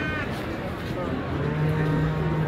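A cow mooing: one long, low, steady call starting about a second and a half in.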